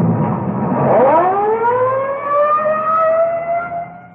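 Radio-drama sound effect of a police car pulling away: the engine runs, then about a second in the siren winds up, its pitch rising steeply and levelling off before fading near the end.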